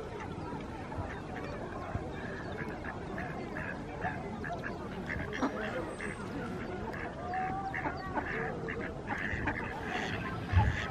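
Mallard ducks quacking, a run of short calls that comes thicker toward the end, over faint background voices.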